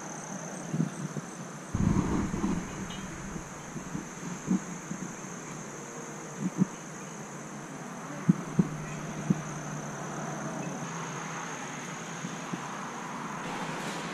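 Outdoor ambience: a steady background hiss with a faint, high, steady whine, a gust of wind on the microphone about two seconds in, and a few brief faint sounds scattered through.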